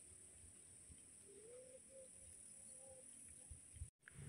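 Near silence: faint outdoor ambience with a steady high hiss, and a faint pitched call that rises and then holds from about one to three seconds in.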